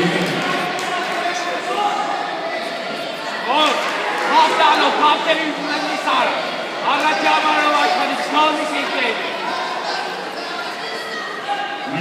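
Several people's voices calling out and talking in a large, echoing sports hall, louder and more insistent from about a third of the way in, over a steady hum of crowd noise.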